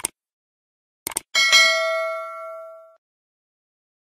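Subscribe-button animation sound effects: a mouse click, then two quick clicks about a second in, followed by a bell ding that rings out and fades over about a second and a half.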